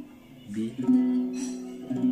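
Acoustic guitar strummed after a brief pause. A chord rings out with several fresh strokes; the chord is a B9 from the verse progression E–C#m–B9–A9.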